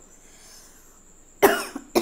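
A person coughing twice, sharply, about half a second apart, starting about one and a half seconds in.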